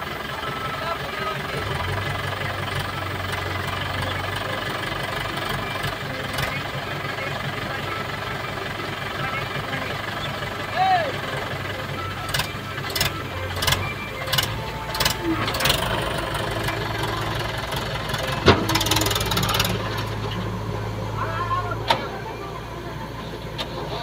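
Mahindra 575 DI tractor's diesel engine running with a loaded soil trailer hitched, its note stepping up about two seconds in and holding. Several short sharp clicks come midway, and a single loud knock follows about 18 seconds in.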